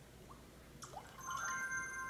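Samsung Galaxy S2 phone's lock-screen sound effects: two faint rising water-drop blips as a finger swipes the screen, then about a second in a chime of several steady tones as the phone unlocks.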